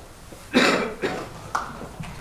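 A person coughing, a sudden loud cough about half a second in, followed by a couple of shorter, quieter sounds.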